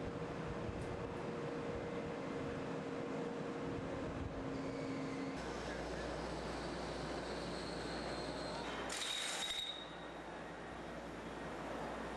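Steady machinery noise of an offshore drilling rig, with a faint hum running under it. About nine seconds in there is a brief hiss.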